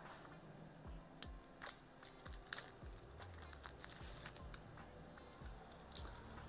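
Faint clicks and crinkling as the plastic cap and wrapping are worked off a dry shampoo aerosol can, with a short rustling burst about four seconds in.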